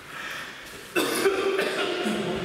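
A man's loud, drawn-out shout that starts suddenly about a second in and holds one pitch.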